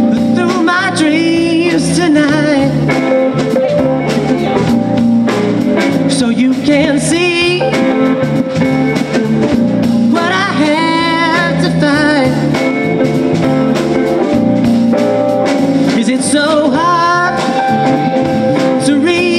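Live rock band playing: electric guitar, bass guitar, drum kit and keyboard, with a lead melody that bends and wavers in pitch over a steady, loud backing.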